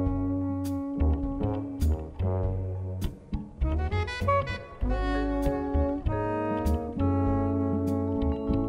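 Live jazz quintet playing: soprano saxophone and trombone hold long melody notes over plucked double bass and drums, with a cymbal stroke about once a second.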